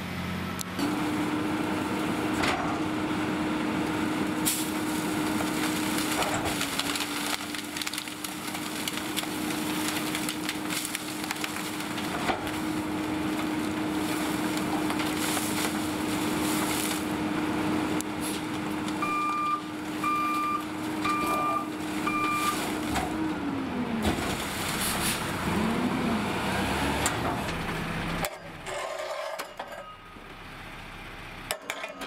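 Peterbilt 520 McNeilus rear-loader garbage truck running at a steady raised engine speed, its hydraulics working, with cracking and knocking as bulky waste and palm fronds are loaded and packed. About two-thirds of the way in come four short beeps about a second apart, then the engine speed drops away.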